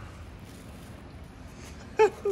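Steady low background noise (room tone), with no distinct sound event.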